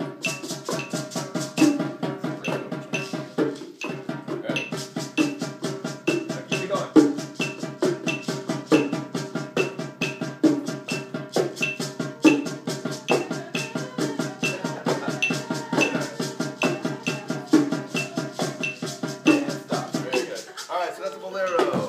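Latin percussion ensemble playing a steady groove: conga drums sounding low notes over a fast, even maraca pulse and sticks on a small drum, with a high click marking the beat. The playing stops at the very end.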